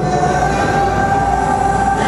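Sustained keyboard chord held steadily over a deep low drone: background worship music.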